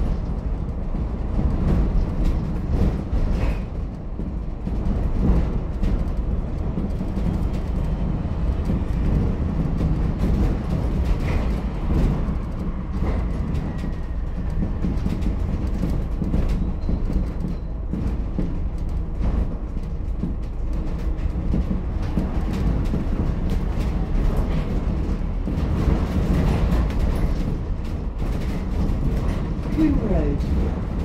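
Inside a moving ADL Enviro400H MMC hybrid double-decker bus with its BAE hybrid drive and the air conditioning off: a steady low rumble from the drivetrain and road, with frequent rattles and knocks from the body and fittings.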